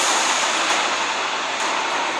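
A loud, steady rushing noise from an animated film trailer's soundtrack, played aloud in the room.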